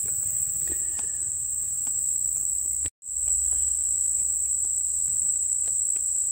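Steady high-pitched chorus of crickets chirring outdoors. It drops out for an instant about halfway through.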